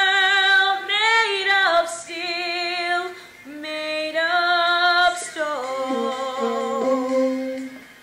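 A female voice singing a slow melody in long held notes with vibrato, with a saxophone playing along.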